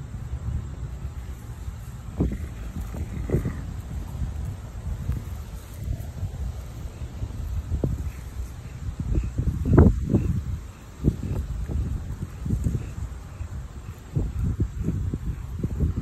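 Wind buffeting the microphone: an uneven low rumble with frequent gusts, the strongest a little past the middle.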